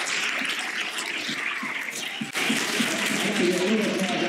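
Audience applauding, cut off abruptly a little over two seconds in and followed by a man's voice.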